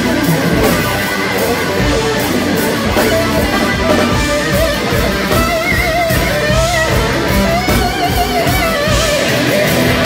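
Live band playing loudly: electric guitars over drums and bass, with a lead line of long, wavering held notes from about three seconds in.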